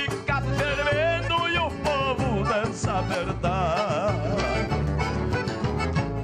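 Gaúcho regional folk music played by an accordion-led band, with guitars and a steady bass beat under a wavering melody line.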